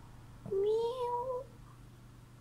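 Tabby kitten meowing once, a single drawn-out call of about a second starting about half a second in.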